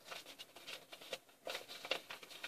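Faint crinkling and light taps of a clear plastic bag holding a fabric concert banner as it is handled and turned, a little louder near the end.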